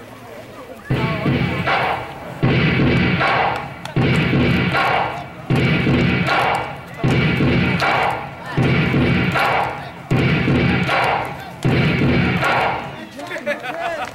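A group of voices chanting in unison: a short shout repeated in a steady rhythm, about every second and a half, eight times.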